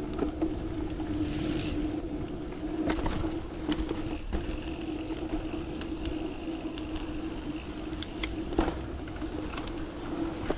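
Mountain bike rolling fast along a dirt singletrack: steady tyre and drivetrain hum with the rattle of the bike over the ground, broken by several sharp knocks from bumps, the loudest about 8.5 seconds in.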